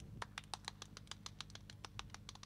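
Faint, sparse clapping from a small audience, several irregular claps a second, over a low steady hum.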